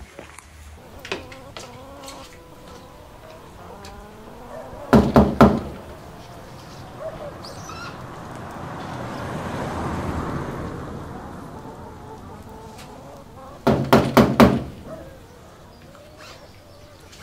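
Knocking on a front door: a quick run of three knocks about five seconds in, then a second, longer run of four or five knocks near the end.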